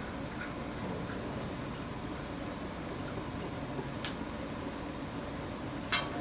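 Quiet room noise with a few faint clicks, then a sharper click near the end, as a glass water pipe and small items are handled over a glass-topped table.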